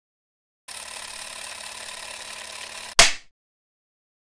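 A steady hiss starts suddenly and runs for about two seconds. It is cut off by one loud, sharp knock that dies away quickly, followed by silence.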